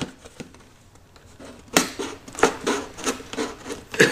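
Ordinary Fiskars scissors cutting through the thick plastic handle of an empty juice jug. Nearly quiet at first, then from about two seconds in comes a run of sharp, irregular snaps and crunches as the blades bite into the plastic.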